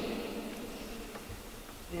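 A pause in a man's amplified speech: faint room tone, with the end of his last word dying away in the hall's reverberation at the start and his voice starting again at the very end.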